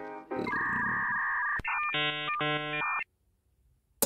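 A short electronic music sting. It starts with about a second of steady synthesized tones, then two blocky chords, and cuts off suddenly about three seconds in.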